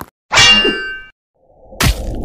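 Cartoon sound effect of a loud metallic clang as chainsaw blades clash, ringing for most of a second. Near the end come a low rumble and a sharp hit.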